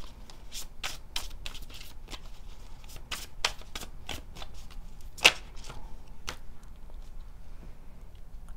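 Tarot deck shuffled by hand: a quick run of card flicks and riffles, with one sharper snap about five seconds in, quieter near the end.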